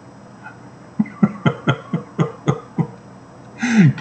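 A man laughing in short, sharp bursts, about eight of them at roughly four a second, starting about a second in and dying away near three seconds.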